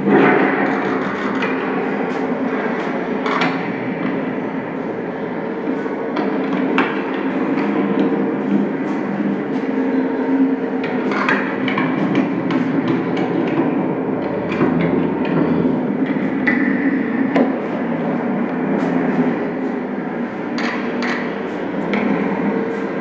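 A steady drone with a low hum, broken by irregular knocks and bangs, heard as the soundtrack of a performance video playing on an old television.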